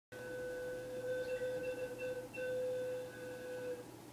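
Fire-bellied toad calling: a steady, mellow tone held at one pitch, briefly broken a few times and stopping shortly before the end.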